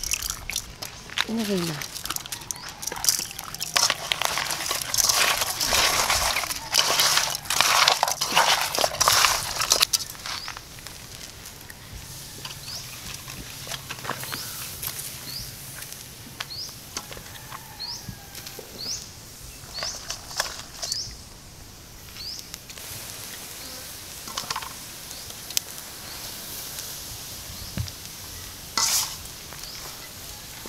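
Hands working salted tilapia in an aluminium basin and laying the fish on a wire grill: dense rustling, crunching and scraping for about the first ten seconds, then sparser clicks and light handling. Short high chirps come and go through the quieter part.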